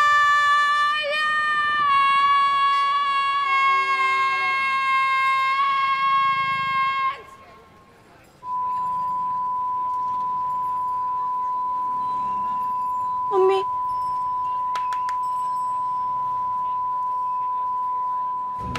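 A woman's piercing, very high-pitched shriek held for about seven seconds, its pitch sagging slightly before it cuts off. After a moment's quiet, a steady pure ringing tone, like ears ringing after a loud noise, sounds on to the end, with a brief blip about halfway through.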